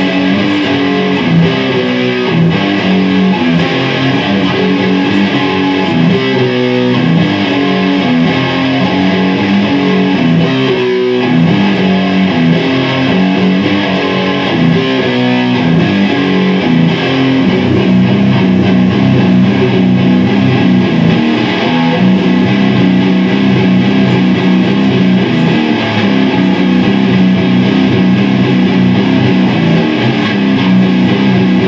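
Electric guitar playing a loud, continuous riff of low notes that change in short repeated patterns, settling into a steadier figure about halfway through.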